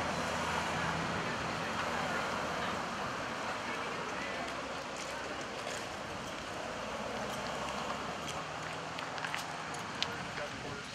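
Steady outdoor city street noise: traffic and indistinct voices, with a few faint clicks.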